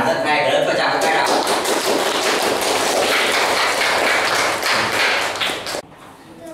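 A classroom of children applauding, many hands clapping at once. The applause starts abruptly and stops suddenly near the end.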